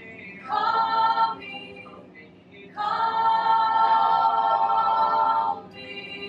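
Unaccompanied singing voices: a short sung phrase about half a second in, then one long held note from about three seconds in.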